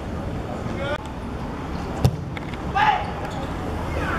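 Outdoor football match sound: a single sharp thud of a ball being kicked about two seconds in, followed by a short shout from a player, over steady background noise from the pitch.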